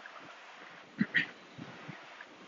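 A quiet pause with faint steady hiss and a few faint low knocks. About a second in there are two brief sounds close together.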